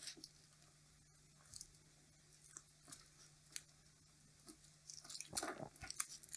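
Faint crinkling and crackling of yellow insulating tape being peeled by hand off a small switch-mode power-supply transformer's winding. It comes as scattered soft clicks, busier near the end.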